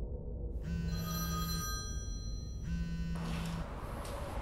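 A phone ringing twice: two steady electronic rings, each about a second long, with a pause of about a second between them.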